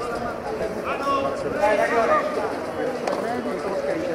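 Voices of people talking, not close to the microphone, over a steady background murmur of a crowd.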